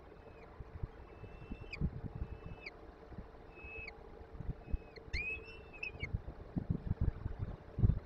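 Peregrine falcon chicks begging as they are fed: about six thin, high calls, each held on one pitch and ending in a downward slide, most of them in the first six seconds. Scattered low thumps and knocks run under the calls, over a steady faint hum.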